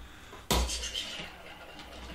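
Small plastic spinning-top toy set spinning on a hard table: a sudden clack about half a second in, then a fading rattle as it spins.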